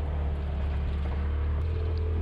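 Polaris RZR Pro XP side-by-side's turbocharged twin-cylinder engine running steadily on the trail, a constant low drone.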